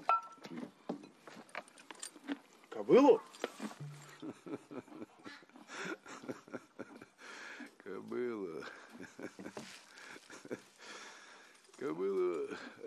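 Voices with speech too unclear to make out, over scattered small knocks and clicks, and one loud call that rises and falls in pitch about three seconds in.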